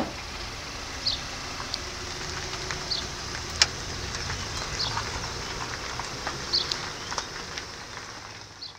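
Outdoor ambience: short high bird chirps about every two seconds, with a few sharp ticks, over a steady low rumble.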